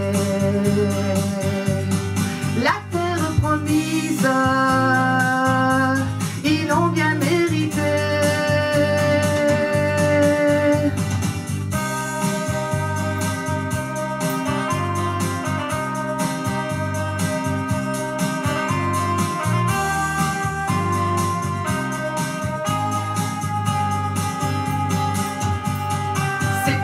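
Instrumental interlude of a pop song's backing track: sustained organ-like keyboard chords over a steady bass beat, changing chord every second or two.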